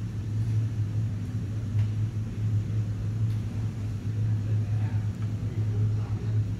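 A steady, low mechanical hum with a faint rumble under it, unbroken and unchanging throughout.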